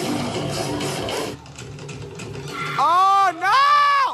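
Background music that cuts off about a second and a half in, then two loud, high-pitched shrieks from a spectator's voice near the end, sweeping up and down in pitch.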